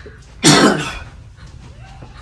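A single loud cough about half a second in, brief and harsh.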